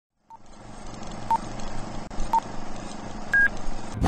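Film countdown leader beeps: three short beeps at the same pitch about a second apart, then a fourth, higher beep, over a steady hiss and low hum.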